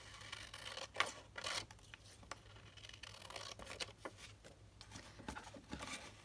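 Scissors cutting through an old paper envelope: faint snips and paper rustle, with the loudest cuts about a second in.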